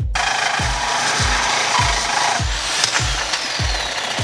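A handheld power tool running steadily on the steel frame, its noise loud and even. Background music with a thumping beat about twice a second plays under it.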